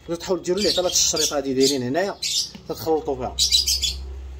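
Caged birds squawking and chirping in short repeated calls, under a man talking.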